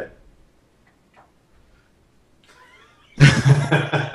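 Near silence on a Skype call for about three seconds, with faint traces of a distant voice, then a man's voice breaks in loudly near the end, laughing.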